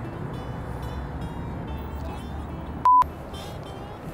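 Steady city street noise with a low traffic hum. About three seconds in, a single short, loud electronic beep at one pitch, a censor-style bleep, with all other sound cut out around it.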